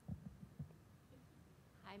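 Near-silent room tone broken by a few soft low thumps of a handheld microphone being handled, within about the first second.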